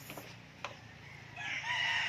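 A gamecock (fighting rooster) crowing, the harsh call starting about two-thirds of the way in and running on past the end.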